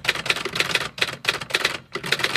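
Typewriter key clatter sound effect: a fast run of keystrokes, broken by short pauses about halfway and near the end, matched to a title typing itself out letter by letter.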